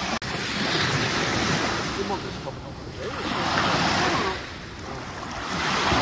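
Small lake waves washing onto a sandy beach, the rush of water swelling and easing every two to three seconds.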